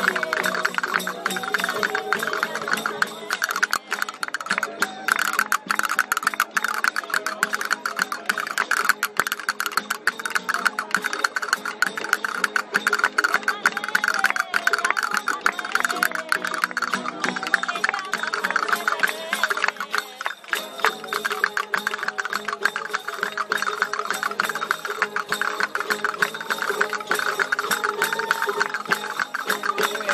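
Spanish folk band playing parrandas, a seguidilla in triple time: strummed guitars with castanets clicking rapidly over them, without a break.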